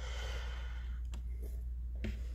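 A person's long sigh close to the microphone, fading after about a second and a half, with a faint click partway through and a steady low hum underneath.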